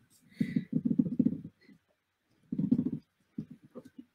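A woman's low, creaky murmuring voice in two short stretches, with no clear words.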